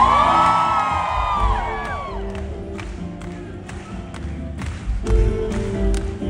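Live band music with keyboard and acoustic guitar over a steady bass, playing between sung lines. Whoops and cheers come from the crowd in the first two seconds, then sharp hand claps keep time with the beat, about three a second.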